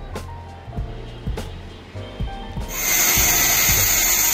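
Handheld electric angle grinder starting up about two-thirds of the way in and running with a steady high whine as it is put to a steel pipe, over background music.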